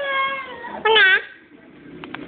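A toddler's high-pitched whining vocal sounds: one long, slightly falling wail, then a short arched cry about a second in.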